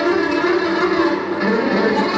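Amplified electric violin bowed live, playing a continuous run of melodic notes.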